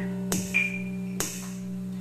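Acoustic guitar being strummed, chords ringing between strokes that come about a second apart, in an instrumental break between sung lines.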